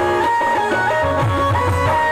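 Devotional dance music: a melody instrument playing held notes with slides between them over a steady low drum beat.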